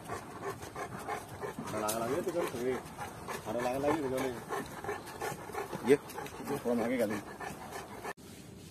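Saint Bernard panting while walking on a leash, with a person's voice talking in short stretches over it.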